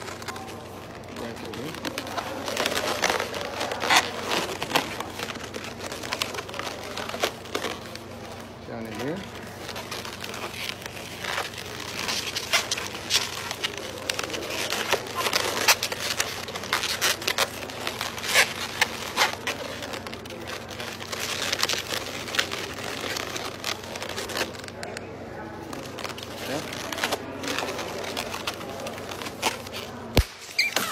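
Latex modelling balloons being twisted and handled, the rubber squeaking and rubbing in many short squeaks throughout.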